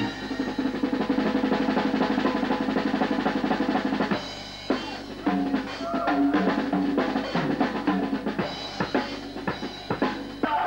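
Live jazz band playing with the drums to the fore: a fast, dense run of drum strokes over a held low note for about four seconds, then a brief dip and sparser drum hits with short held notes.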